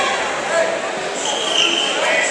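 Wrestling shoes squeaking briefly on the mat, one short high squeak about halfway through, over a steady murmur of voices echoing in a gymnasium.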